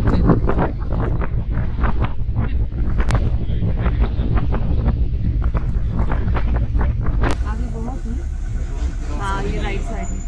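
Open safari jeep driving on a dirt forest track: a steady low rumble of engine and tyres, with wind on the microphone, under people talking. Two sharp clicks, about three and seven seconds in.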